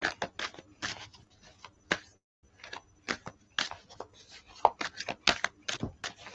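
A deck of tarot cards being shuffled by hand: a quick, irregular run of card flicks and rustles, broken by a short pause a little over two seconds in.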